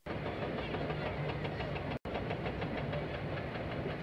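Heavy machinery running with a steady low hum and a fast, even clatter, as from mine processing equipment. The sound cuts out for an instant about halfway through.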